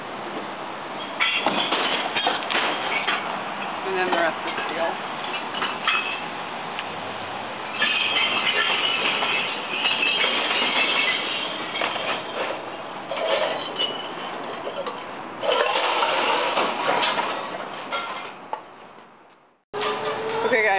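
Recyclables clattering and clinking as they are dropped into recycling bins, in several bursts of clatter.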